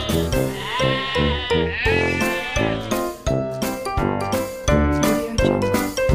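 A goat bleats twice, a wavering call starting about half a second in and another about two seconds in, over loud background music with a steady beat.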